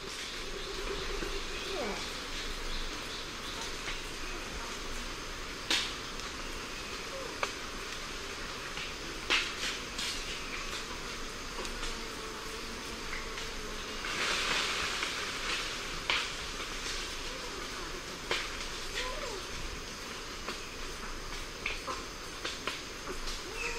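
Lion-tailed macaques giving a variety of calls at medium distance: short sharp calls at irregular intervals and a few lower gliding calls. Wind in the forest hisses steadily behind them.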